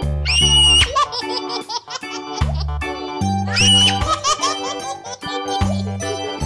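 Bouncy children's background music with a steady bass beat, with a high giggling voice in the track twice: near the start and again about halfway through.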